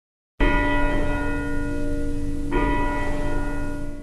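Church bell tolling twice, about two seconds apart, each stroke ringing on.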